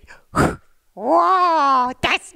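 A puppeteer's voice for a hand puppet: a short puff of breath blown out, then one long drawn-out wordless cry that rises in pitch and slowly falls.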